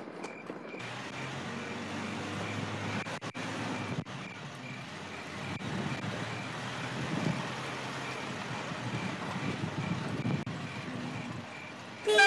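A minivan's engine running as the van drives slowly up a narrow street, a low steady hum under road and engine noise, with a few faint clicks about three and four seconds in.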